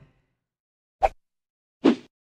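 Two short pop sound effects from an animated title graphic, about a second apart, the second lower in pitch and slightly longer.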